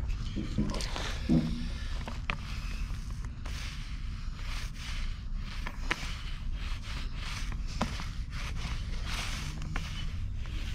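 Paint roller rolling concrete sealer over a rough exposed-aggregate stepping stone studded with glass beads: repeated short scraping swishes, over a steady low rumble.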